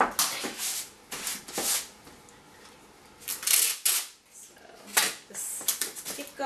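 Masking tape being pulled off the roll and torn in short rips, then pressed across the top of a cardboard oatmeal container. A series of brief tearing sounds, with a longer pull a little past halfway.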